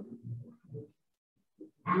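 A woman's voice: a few short, low vocal sounds trailing off the count, then about a second of near silence, with speech starting again near the end.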